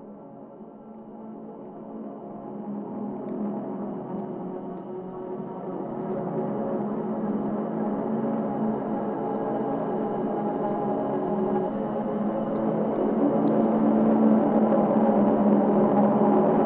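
Opening of a trap instrumental: a drone of held, sustained tones with no drums, swelling steadily louder.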